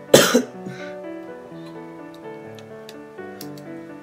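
A young man's single loud cough right at the start, over background music with slow held notes.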